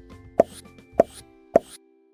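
Three loud cartoon-style pop sound effects, evenly spaced about half a second apart, over light plucked-string background music that winds down near the end.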